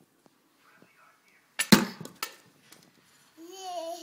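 A toddler's plastic toy bat hitting a ball off a batting tee: one loud smack about a second and a half in, then a lighter knock. Near the end comes a short babbling vocalization from the toddler.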